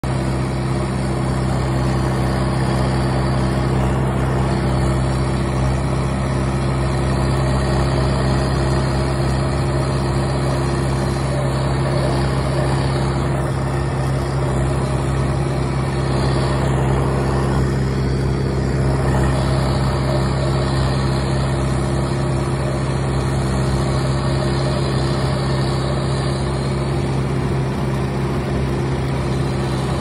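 Tractor engine running at a steady speed while driving a brush hog (rotary cutter) through grass, with an even, unchanging engine drone.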